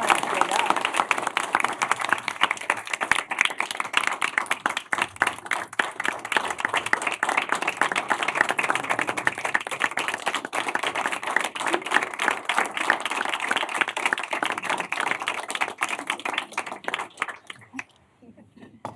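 A roomful of people clapping in sustained applause that thins out and stops near the end.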